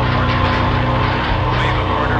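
Death metal band playing: heavily distorted guitars over fast, continuous drumming, forming a dense, unbroken wall of sound.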